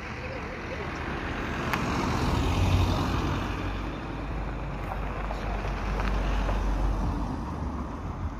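A moving car's road noise: a steady rumble of tyres and engine that swells a couple of seconds in and again around six to seven seconds.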